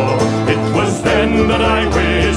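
Instrumental break of an Irish folk song, played by a band of guitars, banjo, fiddle, mandolin and cello with bodhrán. A wavering melody line runs above the strummed and plucked strings, and the low notes drop out for about the first second before coming back.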